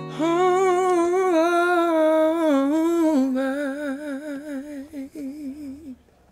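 A male singer's voice holding a long wordless note with no guitar under it. The note steps down in pitch about halfway through, its vibrato widens, and it ends the song.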